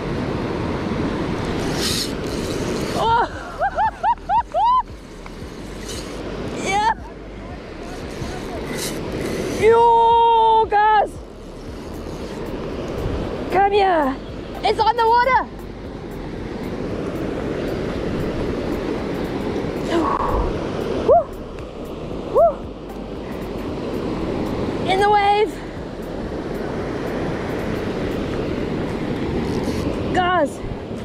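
Waves breaking and washing up a sandy beach, a steady rush of surf. A person's short voiced exclamations cut in several times over it.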